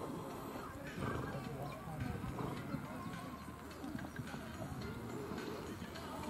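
A horse cantering on a sand arena surface, its hoofbeats heard under background voices and music.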